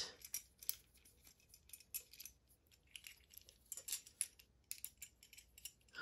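Faint, irregular small metal clicks and scrapes as a small Allen key turns and seats a screw in a CNC-alloy bicycle phone mount, with light handling of the metal parts.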